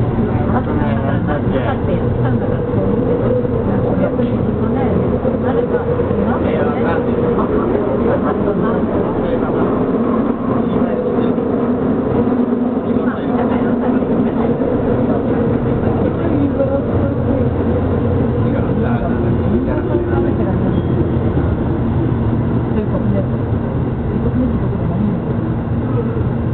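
Tobu Railway subway train running through a tunnel, heard from inside the passenger car: a steady rumble of wheels on track with a constant hum from the running gear. Voices murmur in the background.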